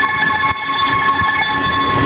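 Stationary 651 series electric train humming at the platform, with a steady high whine from its onboard equipment over a low rumble.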